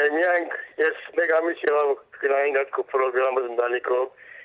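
Speech: a voice talking in phrases with short pauses.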